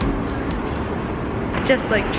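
Steady city street noise with traffic running in the background.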